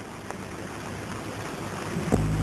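Steady hiss of an old optical film soundtrack, with no speech or music, growing slightly louder toward the end.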